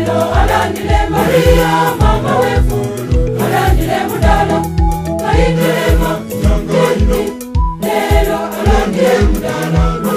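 Gospel choir song: voices over an instrumental backing with a steady low drum beat about twice a second. The music drops out for a moment about three quarters of the way through.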